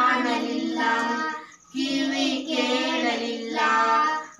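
A small group of children singing a Kannada Christian song unaccompanied, holding long notes, with a short breath pause about one and a half seconds in.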